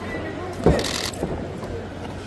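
A boxing punch landing with one sharp thump a little under a second in, followed by a short high hiss, over faint voices in the gym.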